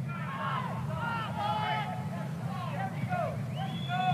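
Field-level ambience of a soccer match: several distant voices shouting and calling across the pitch, overlapping, over a steady low background hum.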